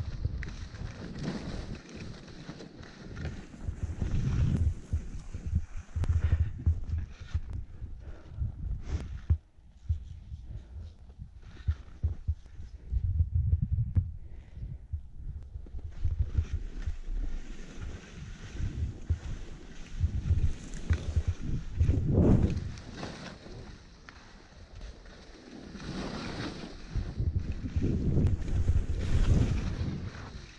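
Wind buffeting a ski camera's microphone during a downhill run, a low rumbling rush that swells and fades, with skis hissing and scraping over the snow in the louder surges.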